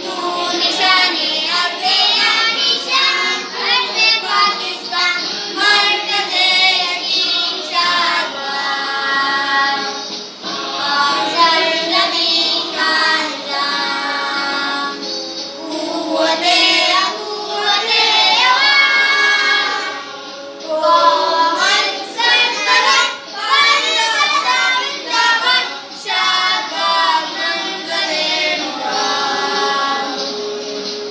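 A group of children singing a patriotic song together, the sung lines running on with only short breaks for breath.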